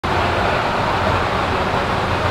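Steady background noise of a large indoor atrium: a low hum under an even hiss, with no distinct events.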